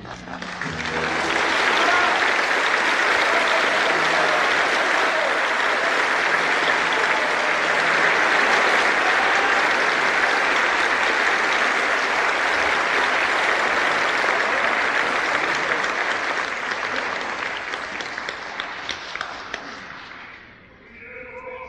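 Opera-house audience applauding a sung number in a live performance: the clapping swells within the first two seconds as the last sung note dies away, holds steady, then thins and fades over the last few seconds.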